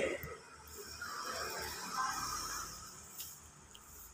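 Quiet room tone: a faint low hum under a faint, indistinct background sound.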